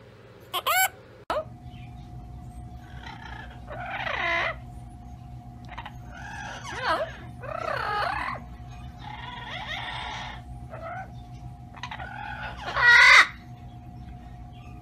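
A monk parakeet gives two short squawks about a second in. Then a yellow-headed amazon parrot makes a series of calls of half a second to a second each, the last and loudest near the end, over a steady background hum.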